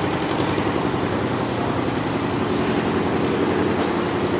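A machine running steadily: an even, unchanging low drone with no breaks or changes in pitch.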